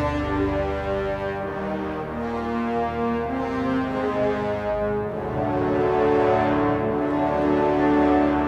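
The closing bars of a brass-heavy orchestral superhero theme built from sample-library instruments: long held chords on bass trombones and tuba. The chords change about three seconds in and again about five seconds in, then swell louder toward the end.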